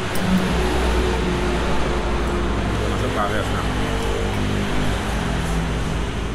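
A motor vehicle's engine running nearby, a steady low rumble with a few shifting engine tones, starting about half a second in.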